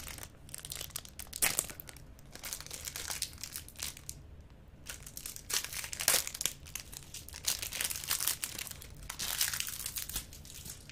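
Clear plastic wrapper of a twist-pop lollipop crinkling and crackling as it is picked at and peeled off, in irregular bursts with a short lull a little before halfway.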